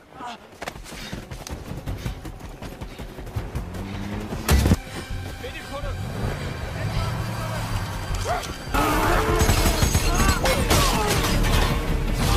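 Action-film soundtrack mixing music with effects: a single loud bang about four and a half seconds in, then from about nine seconds a louder, busier stretch of crashes and shouting voices.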